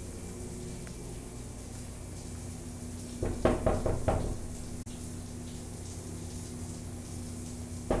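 Knuckles rapping on a closed hotel bathroom door: a quick run of about five knocks about three seconds in, and another run starting right at the end.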